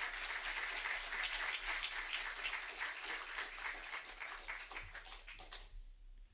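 Audience applauding, the clapping thinning out and dying away a little before the end.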